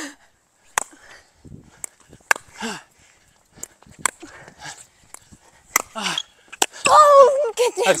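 A pickleball rally: a series of sharp pops from paddles striking the hard plastic ball and the ball bouncing on the court, irregularly spaced about a second apart. A voice cries out near the end as the point finishes.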